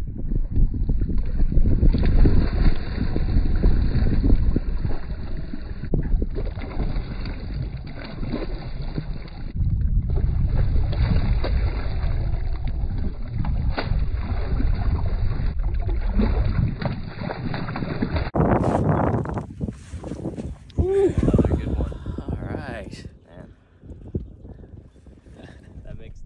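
Wind buffeting the microphone over choppy lake water as a hooked largemouth bass is played beside the boat, with a brief splash about halfway through as the fish thrashes at the surface. The rumble cuts off suddenly about three-quarters of the way through, and quieter, different sounds follow.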